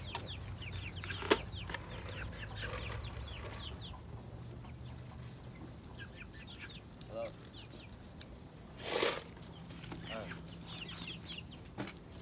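Young chickens peeping in clusters of short, falling chirps. There is a brief loud rustle about nine seconds in.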